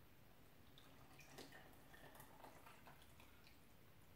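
Faint pouring of a runny, still-liquid chocolate brownie batter from a glass bowl into a metal mixing bowl, with soft drips and splashes coming and going.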